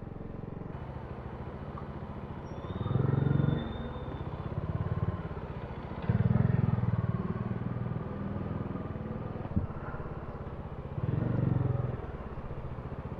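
Kawasaki Dominar 400's single-cylinder engine running at low speed in stop-and-go traffic, its low drone swelling four times as the throttle is opened to pull forward, with a brief tick near the end.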